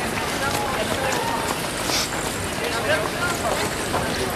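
Footsteps of a dense pack of half-marathon runners on street pavement, a steady mass of footfalls with scattered sharp ticks, under the voices and calls of runners and spectators.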